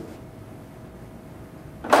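A single sharp clack near the end, the sound of a SMART Board marker pen being set back into the board's pen tray. Before it there is only a faint steady hum.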